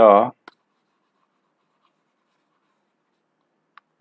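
A man's voice for a moment at the start, then near silence broken only by a few faint clicks and ticks of a stylus on a graphics tablet.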